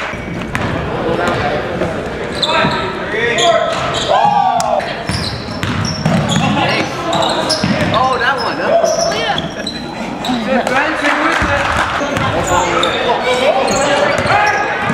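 A basketball bouncing on a hardwood gym floor among indistinct voices of players and spectators, all echoing in a large gymnasium.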